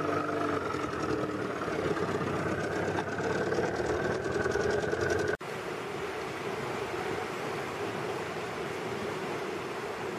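A small boat's motor running steadily over the rush of river rapids. About five seconds in the sound cuts abruptly, and after that only the steady rush of whitewater is heard.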